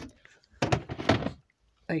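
Plastic storage tub being handled and pushed back onto a pantry shelf: a quick run of knocks and scraping thuds starting about half a second in and lasting under a second.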